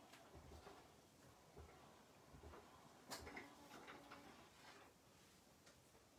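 Near silence, with a few faint scattered ticks and light knocks from a hand-cranked foil and die-cutting machine as its handle turns the rollers and the plates are handled.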